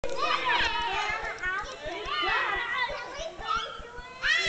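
Several young children shouting and chattering at play, high-pitched voices rising and falling and overlapping one another.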